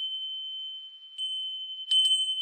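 A high-pitched bell struck several times, ringing on steadily between strikes: a fresh strike a little over a second in and another near the end.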